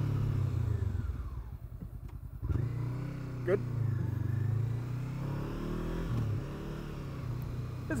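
Honda CBR500R parallel-twin engine and wind noise falling away as the bike brakes hard in an emergency stop. The engine pulses slowly at low revs for a moment, then picks up sharply about two and a half seconds in as the bike pulls away and accelerates.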